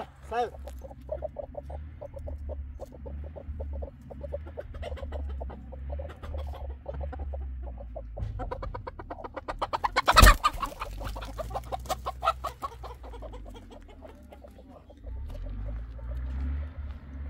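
Domestic hens clucking in a long run of short, quick calls, with one sharp knock about ten seconds in.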